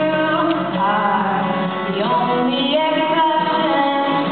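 A woman singing a song live into a microphone, holding and sliding between notes, accompanied by a strummed acoustic guitar.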